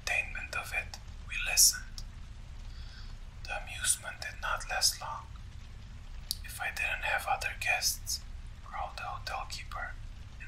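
Whispered speech: a narrator reading a story aloud in a whisper, in several phrases with short pauses between, over a steady low background hum.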